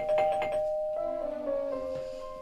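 Two-tone electric doorbell ringing, struck several times in quick succession. About a second in, a short music cue comes in, its notes stepping downward.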